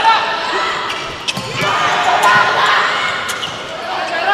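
Indoor volleyball rally: a few sharp smacks of the ball being played over crowd noise in a large hall, the crowd swelling about a second and a half in.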